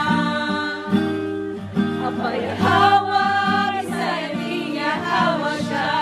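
A religious song sung in Tagalog, with voices carrying the melody over a plucked acoustic guitar.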